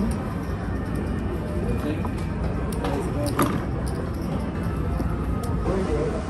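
Casino floor hubbub: background voices and music, with scattered sharp clicks of roulette chips being stacked and pushed across the table, the loudest about three and a half seconds in.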